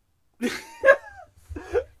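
A man laughing in a few short bursts, the loudest about a second in.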